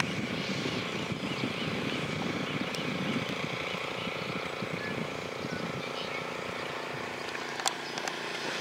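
A steady engine drone with a constant low hum, like a distant aircraft or motor. Faint, evenly repeated high chirps sound over it during the first three seconds.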